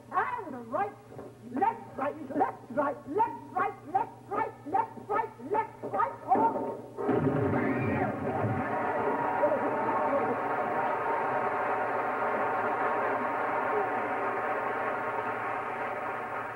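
A stage musical number ending: the cast sings a quick run of short, rhythmic cries, and about seven seconds in the cast and orchestra break into a long sustained final chord that holds to the end.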